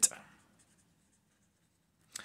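Felt-tip pen writing a word on paper: faint, scratchy strokes that stop about a second and a half in.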